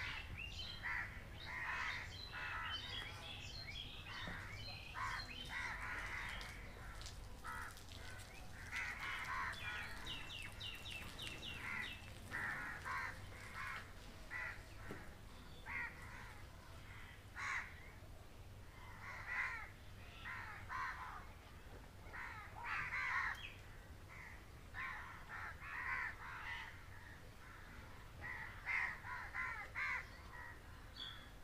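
Birds calling over and over in short, harsh calls, with a quick run of higher notes about ten seconds in.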